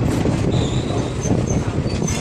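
ICF passenger coaches rolling past at close range: a loud, steady rumble of wheels on rail, with a few short high-pitched wheel squeals.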